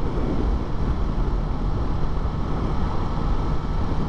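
Yamaha MT-03's parallel-twin engine running steadily at a cruise, mixed with wind rushing over the microphone.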